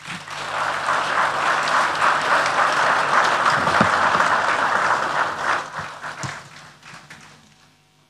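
Audience applauding, steady for about five seconds and then dying away.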